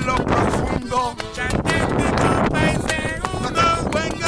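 Live Cuban son music from a small street band: a piano accordion playing with hand-drum strikes throughout, and a voice bending in and out over it.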